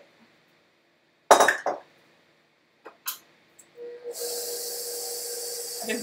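A sharp clatter of kitchen utensils and bowl about a second in, then a few light knocks. Near four seconds a stand mixer's electric motor starts and runs with a steady hum and hiss.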